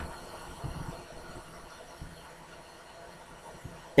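Faint, steady background hiss and low rumble of room tone, with a couple of soft low thumps about a second and two seconds in.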